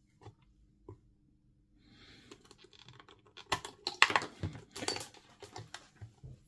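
Multimeter test probes clicking and scraping against the plastic terminal connector of a Dyson V7 battery pack as they are worked into its pin slots. A few light clicks come first, then a run of rapid clicking and rattling in the second half, loudest about four seconds in.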